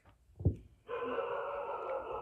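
A short thump about half a second in, then a long, breathy nervous exhale through a hand held over the mouth, lasting over a second.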